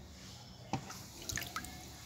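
A hand stirring water in a tank: a few small splashes and drips, one just under a second in and a few more around halfway.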